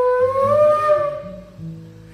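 Quenacho, a low-pitched Andean notched cane flute, holding a long note that bends slightly upward and then fades out over about a second, leaving a short pause before the next phrase.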